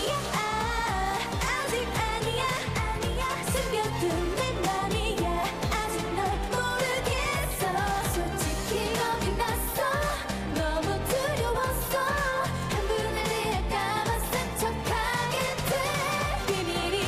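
A girl group singing a K-pop song in Korean over a pop backing track with a steady beat.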